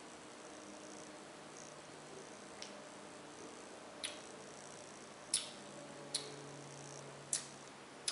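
Faint lip smacks and tongue clicks of a person tasting a mouthful of beer: a handful of short, sharp clicks about a second apart, over a low steady hum.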